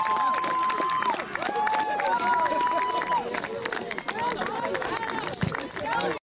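A small group of players and staff cheering and shouting outdoors, with several long held shouts over a babble of voices.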